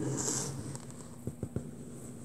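Fingernail picking and scraping at the plastic shrink-wrap on an iPhone box: a short rustling scrape near the start, then a few faint clicks.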